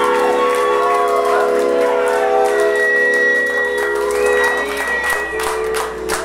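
A rock band's final chord ringing out, with electric guitar and keyboard notes held and sustaining. A high steady tone sounds over them in the middle, and scattered clapping comes in near the end as the chord fades.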